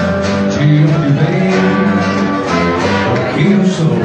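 Live band playing a rock song: acoustic guitar strummed in a steady rhythm under sustained lap steel guitar notes.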